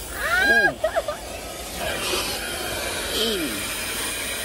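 A woman's voice crying out for about the first second, then a vacuum hose starts up as a steady hissing rush of air from about two seconds in.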